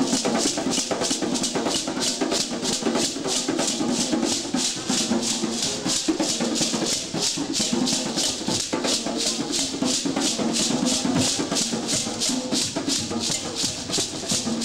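Hand shaker rattled in a steady rhythm, about three shakes a second, over a lower accompaniment of music.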